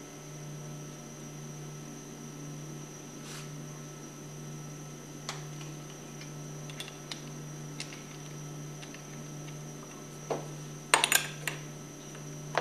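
Small pump parts being handled on a steel workbench: scattered light clicks, then a quick cluster of sharper clicks and knocks near the end as a pipe is pushed over a plunger to seat a seal retainer. A steady low hum runs underneath.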